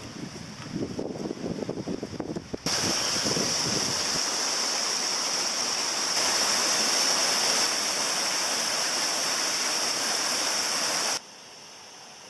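Steady rushing water of a river. It starts suddenly about three seconds in, after some irregular low sounds, and cuts off abruptly shortly before the end.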